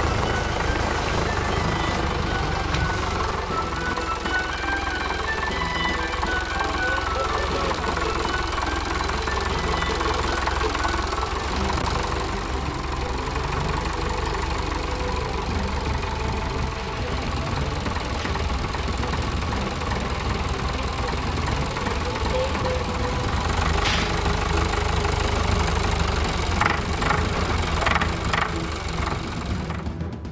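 A tractor engine running steadily at low revs, a deep continuous rumble, with a melody playing over it for the first several seconds.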